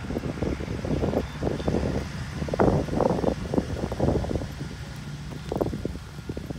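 Wind buffeting the microphone in irregular gusts, loudest around the middle.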